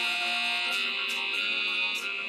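A looped song sample playing back from music software, dominated by a steady, buzzy high tone held over lower sustained notes.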